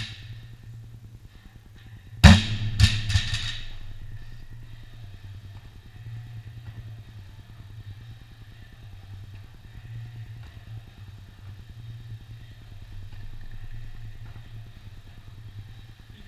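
A loaded barbell with bumper plates is dropped onto a rubber gym floor: one loud crash about two seconds in, then three or four quick smaller bounces that die away within about a second. A steady low hum runs underneath.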